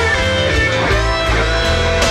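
Electric blues band playing an instrumental passage: a lead guitar line with bent notes over a steady bass and drums.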